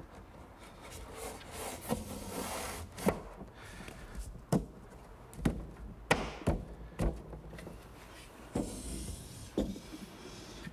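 Plywood drawer bottom sliding down the grooves of a pine drawer box with a rubbing scrape, broken by about nine sharp wooden knocks as the panel is pushed home and the drawer is handled on the workbench.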